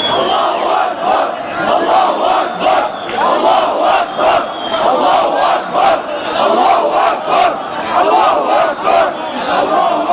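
A large crowd of street demonstrators chanting slogans together in rhythm, the many voices swelling and dipping about once a second, with sharp beats running through it.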